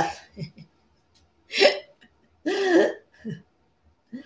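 A woman's voice in four short, separate bursts, such as small chuckles or half-spoken sounds. The longest comes a little after the middle, with quiet gaps between them.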